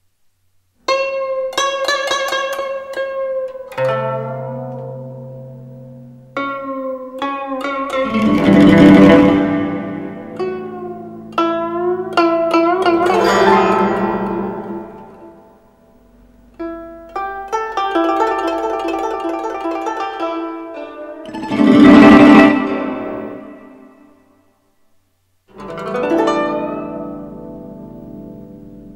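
Chinese plucked zither music: phrases of plucked, ringing notes, broken by loud rapid flourishes about eight, thirteen and twenty-two seconds in, with brief pauses between phrases.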